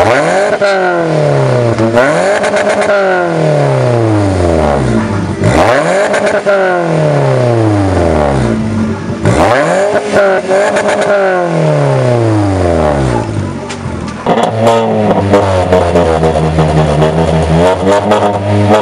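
Car engine revved through an aftermarket exhaust about five times, each rev climbing quickly and sinking slowly back to idle. About fourteen seconds in it gives way to an engine idling steadily.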